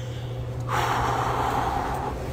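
A person's breathy exhale, starting just under a second in and lasting about a second, over a steady low hum.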